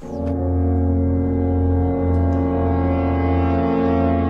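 One long, low horn note held steady, a closing sting for the video's outro.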